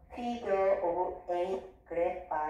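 A woman speaking, in short phrases.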